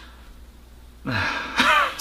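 A man's stifled laugh behind his hand: a breathy exhale about a second in, then a short voiced chuckle.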